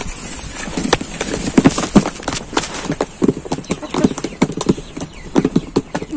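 Hens pecking cottage cheese from a plastic tray: rapid, irregular taps of beaks on the tray, several a second.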